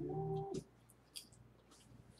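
A man's drawn-out "oooh" reaction, one steady held pitch lasting about half a second before cutting off, followed by a faint click about a second in.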